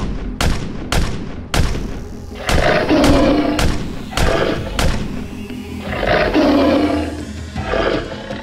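Dubbed sound effects: three pistol shots about half a second apart, then a tiger roaring four times, over background music.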